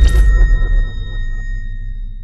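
Cinematic logo sting sound effect: a deep bass boom that rumbles and slowly dies away, with a few high, steady ringing tones over it that fade out.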